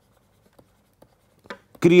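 Digital pen writing on a tablet surface: a few faint ticks and scratches as a word is handwritten.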